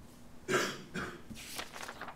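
A person coughing, three coughs in a row, the first and loudest about half a second in.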